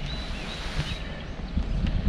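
Wind buffeting the microphone in an uneven low rumble, with faint high bird chirps during the first second.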